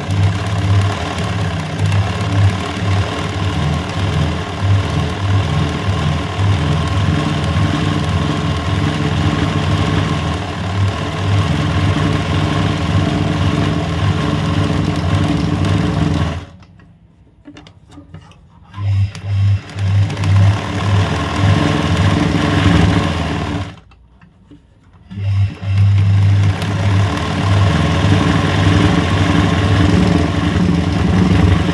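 Electric sewing machine running steadily as it stitches free-motion machine embroidery, filling a leaf shape. It stops twice, for about two seconds a little past halfway and for about a second and a half near three quarters through, then starts again.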